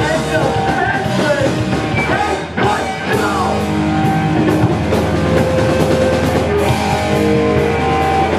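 Hardcore punk band playing live: electric guitars, bass and drum kit with vocals, loud throughout. The sound drops briefly about two and a half seconds in before the full band comes back in.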